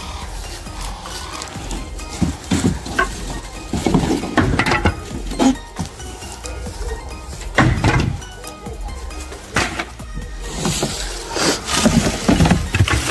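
Pieces of scrap wood thrown into a raised bed, knocking and clattering several times. Near the end comes a longer rustling tumble as pruned cypress branches and leaves are tipped in from a plastic bin. Faint background music runs underneath.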